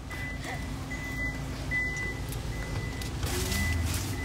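A vehicle's high electronic warning beep, one steady pitch sounding in broken stretches, over the low hum of the idling vehicle.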